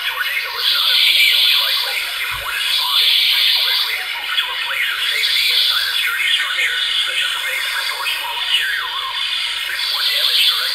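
Weather radio broadcast of a National Weather Service severe weather warning: a thin, tinny voice mixed with hiss, too garbled to make out.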